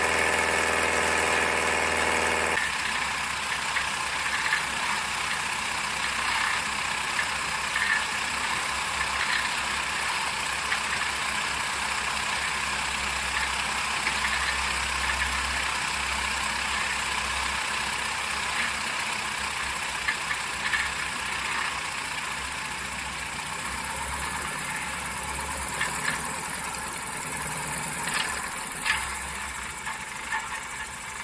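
Piper Super Cub light-aircraft engine and propeller droning at flight power, changing abruptly a couple of seconds in to a steady rush of wind over the outside-mounted microphone with the engine running lower, as the ski plane comes down and slides across deep powder snow. A brighter hiss builds in the last few seconds.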